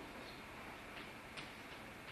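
Quiet room tone with a few faint, sharp ticks and taps spaced irregularly, the clearest about one and a half seconds in.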